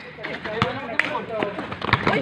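Background voices talking, with a few sharp knocks of a basketball being dribbled on a concrete court.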